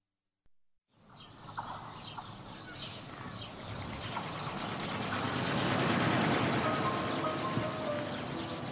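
After about a second of silence, outdoor ambience with bird chirps fades in and grows steadily louder; held music notes come in near the end.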